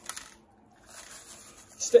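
Damp paydirt pouring and pattering from a heat-sealed bag into a plastic gold pan, with the bag rustling. There is a short quiet gap about half a second in.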